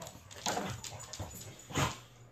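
Pembroke Welsh corgi and pit bull play-wrestling, making short breathy dog noises, with a louder burst near the end.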